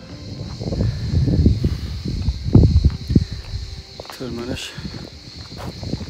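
A steady, high insect buzz runs throughout. In the first half it sits under loud, irregular low rumbling and thumps on the handheld microphone, and a man says a few words about two-thirds of the way in.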